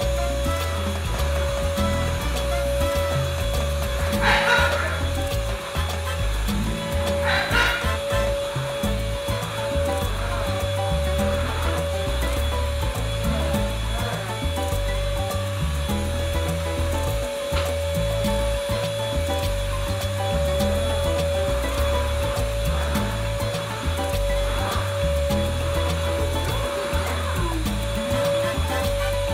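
Stick vacuum cleaner running with a steady motor whine, over background music. Two brief louder noises stand out about four and seven seconds in.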